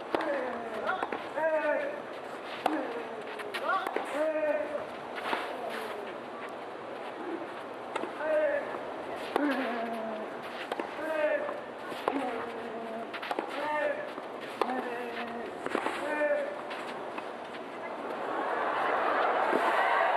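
Tennis ball struck back and forth by rackets in a rally, a sharp hit every second or two, with short voiced shouts among the strikes. Crowd noise swells near the end as the point comes to a close.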